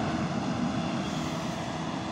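Diesel engine of a PRZSM3 self-propelled rail track machine running steadily as the machine rolls along the track and moves away. The sound slowly grows fainter.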